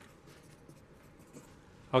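Pencil writing a word on paper: faint scratching strokes of the lead on the sheet.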